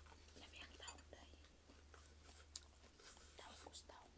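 Faint chewing and wet mouth clicks from someone eating fried fish by hand, as short sharp smacks scattered irregularly, over a low steady hum.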